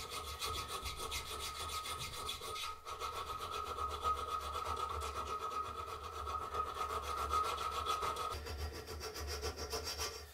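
Hand filing steel: a needle file rasping back and forth in the tang slot of a steel knife guard held in a vise, with a brief pause just before three seconds in. A steady high ring sounds over the rasping and stops about eight seconds in.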